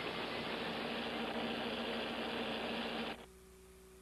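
Steady hiss of broadcast or tape noise that cuts off suddenly about three seconds in, leaving only a faint low hum.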